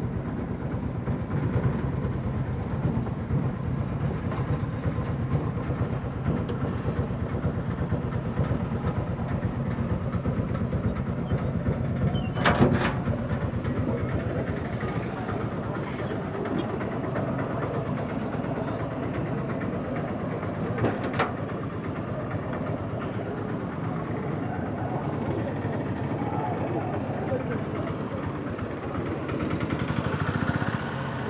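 Steady engine and road noise heard from inside a moving vehicle in traffic, a low even hum. A sharp knock stands out about twelve seconds in, with a smaller one around twenty-one seconds.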